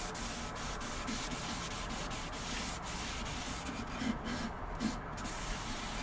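A cloth damp with white spirit rubbed in repeated strokes along a sanded wooden board: a soft, irregular scrubbing as the surface is wiped clean and degreased before oiling.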